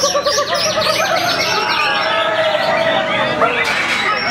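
Several white-rumped shamas (murai batu) singing at once, a dense overlapping chorus of fast repeated notes and high whistled phrases.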